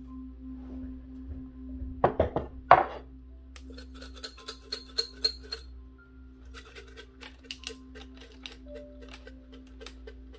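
Small tokens rattling and clinking inside a ceramic cup as it is shaken, in quick irregular clicks, after two louder knocks about two seconds in.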